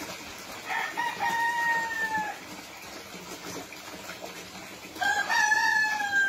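Rooster crowing twice: a long held crow, falling a little at its end, about a second in, and a second crow starting near the end.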